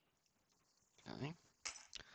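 Hard clear plastic of a cracked-open PSA graded case clicking twice near the end as the broken pieces are handled; the first second is near silence.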